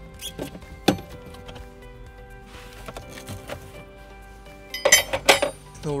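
Metal tools clinking in a plastic cargo tray: a single sharp click about a second in, then a quick cluster of ringing metallic clinks near the end as spare tire equipment is handled. Soft background music plays throughout.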